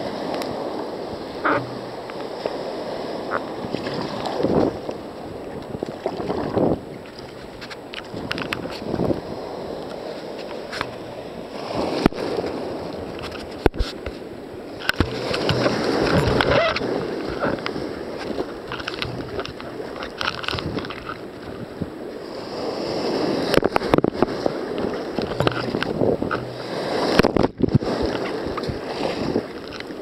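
Breaking surf and whitewater rushing and sloshing around a sea kayak's hull and deck, rising in louder surges as waves break over the bow. Now and then there is a sharp knock.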